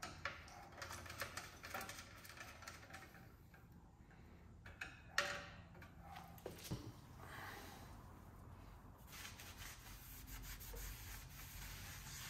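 Light clicks and scrapes of a screwdriver working on the air-cooled VW engine's sheet-metal tins, with one sharper metallic knock about five seconds in. Near the end a rag rubs steadily across the flywheel face as it is wiped clean.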